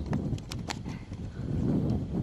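Large animals moving through brush and grass: a few sharp clicks in the first second over a low, steady rumbling.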